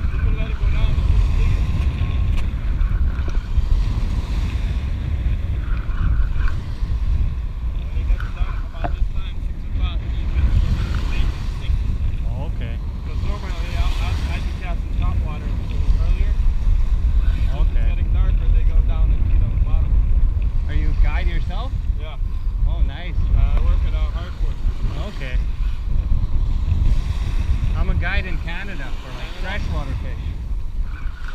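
Wind buffeting the microphone in a heavy, uneven rumble, over small waves washing onto the shore.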